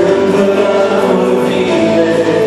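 A group of voices singing a Christian song together in harmony, holding long notes over music.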